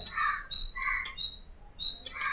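Faint bird calls in the background: three short calls about a second apart.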